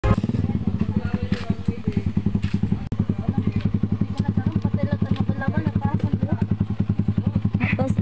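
Small motorcycle engine running steadily with a rapid, even putter, with a brief dip about three seconds in.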